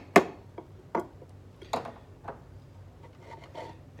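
Claw hammer tapping a tiny nail cut from a paper clip into the wooden frame of an Orff metallophone, pinning the rubber tubing that cushions the bars. Four light, sharp taps come in the first two and a half seconds.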